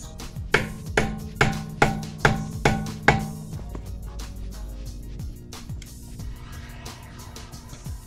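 A hammer striking a chisel set against the wheel hub, seven sharp hits at about two a second, each with a short metallic ring. The hits then stop. This is the hit-and-turn method for freeing a wheel stuck fast to its hub.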